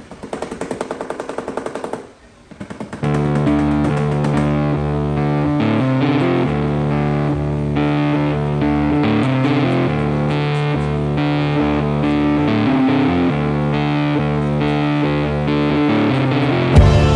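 Background rock music with a distorted electric guitar: a fast, choppy riff at first, then held chords from about three seconds in.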